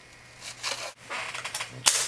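Paper and cardstock being handled on a cutting mat: rustling from just before the midpoint, and a sharp tap near the end.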